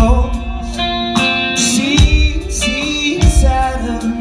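Rock band playing a song live through a PA: distorted electric guitars and bass over drums, with kick-drum and cymbal hits landing about every second and a half, and a sung vocal line on top.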